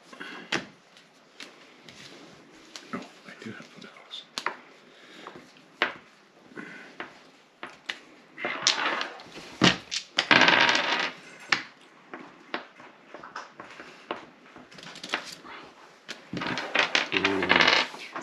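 Playing cards being handled on a wooden table: scattered light clicks and taps, with a dense run of card shuffling about halfway through.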